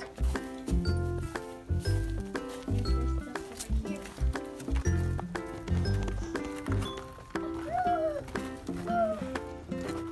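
Background music with steady held notes over a low beat; the beat drops out about seven seconds in.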